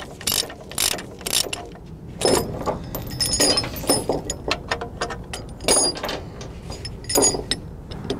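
Ratchet chain binder on a trailer tie-down being cranked loose, its pawl clicking with each stroke of the handle, while the slackened steel chain clinks and rattles with bright metallic ringing around the middle.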